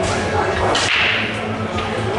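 Pool cue striking the cue ball with a sharp crack about three-quarters of a second in, followed by fainter clicks of balls hitting.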